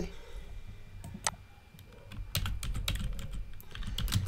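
Typing on a computer keyboard: irregular key clicks, a lone one about a second in, then a quicker run over the last two seconds.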